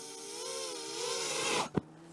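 FPV drone's motors and propellers whining as it comes in to land, the pitch wavering with the throttle and the sound growing louder, then cutting off suddenly about one and a half seconds in, followed by a short click.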